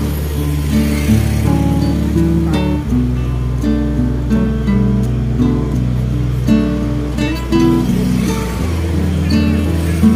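Background music: a melody of short, distinct notes over a held bass note that shifts twice.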